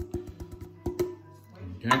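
Background music, with a quick irregular run of light taps as a glass bowl is knocked against a glass measuring jug to shake out flour.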